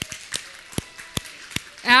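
A series of short, sharp clicks at an uneven pace, about eight in two seconds, against a quiet background. Speech starts again near the end.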